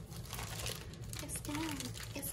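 A thin plastic bag crinkling and rustling as a hand rummages in it. About one and a half seconds in, a voice briefly sings a short phrase.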